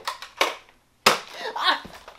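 Nerf foam-dart blasters firing: a few sharp snaps in the first half second, then after a brief dead gap a single sharp crack about a second in, followed by a short vocal sound.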